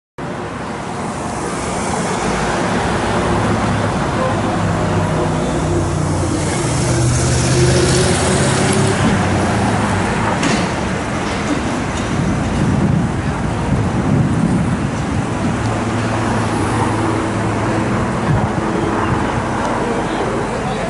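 City street traffic: a steady wash of road noise from passing cars, with the low hum of running engines. It cuts in suddenly just after the start.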